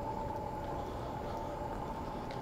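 Outdoor street ambience: a steady high-pitched hum holds unchanged over a low rumble.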